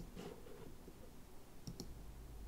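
Faint computer mouse clicks over quiet room noise: one at the start, then two close together near the end.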